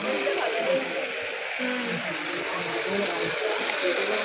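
Crowd babble at a busy fair stall: many voices overlapping over a steady hiss of hall noise, with no single voice standing out.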